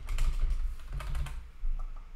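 Computer keyboard typing: a run of irregular, closely spaced keystrokes.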